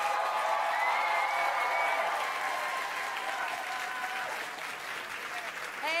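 Audience applauding, dying down slowly toward the end.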